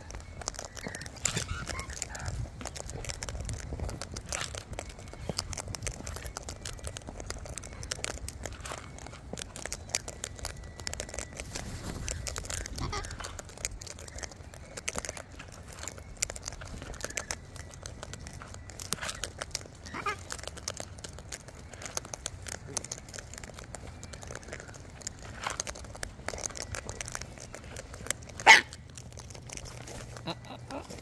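Birds feeding from a plastic tub: irregular taps and crunches of beaks on food and the plastic, with one sharp knock near the end.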